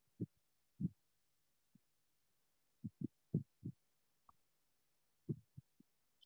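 Faint, low, dull thumps in irregular groups, about ten in all, with dead silence between them.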